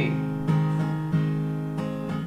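Steel-string acoustic guitar strumming a G major chord, about four strokes, each left to ring.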